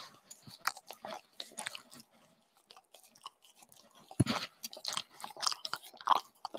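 A puppy licking and mouthing at a face close to the microphone: scattered soft wet smacks and clicks, with a louder cluster about four seconds in.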